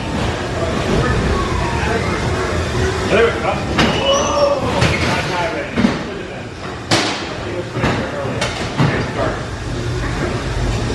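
Haunted-house dark ride in motion: the ride car rumbles steadily along its track while several sharp bangs go off, with voices and a wailing, rising-and-falling tone mixed in.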